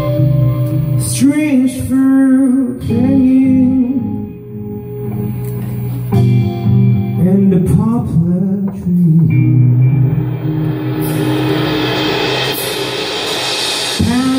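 Live psychedelic rock band: a male voice singing phrases over electric guitar, bass and drums. Cymbals build into a loud wash over the last few seconds.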